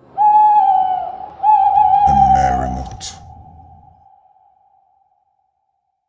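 An owl hooting twice, each hoot about a second long, the second trailing off in a long fading echo.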